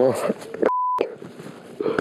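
A short, steady, high-pitched beep lasting about a third of a second, dubbed in over a cut in the speech: a broadcast censor bleep hiding a word.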